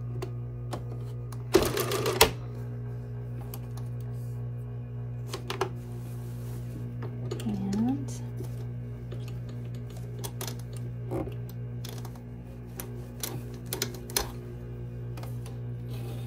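A 1961 Singer Sew Handy child's chainstitch sewing machine clicking and clattering as it stitches through fabric, in short irregular runs. A loud rattling burst comes about two seconds in, and a steady low hum lies underneath throughout.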